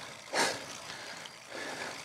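A cyclist's single short, hard breath out about half a second in, while working up a climb, over a steady faint hiss.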